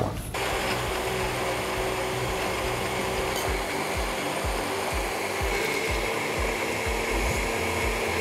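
Electric countertop blender running steadily, puréeing a thick ocopa sauce of peanuts, animal crackers, ají peppers, huacatay and oil. The motor starts about a third of a second in.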